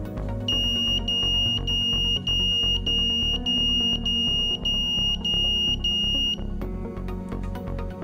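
Small electronic buzzer on an ATtiny85 vibration-sensor alarm sounding a high-pitched beep about ten times in a steady rhythm, then cutting off. The alarm has been set off by a tap on the breadboard that the SW-420 vibration sensor picked up. Background music plays underneath.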